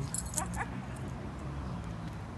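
A small dog gives two short, high whimpers about half a second in.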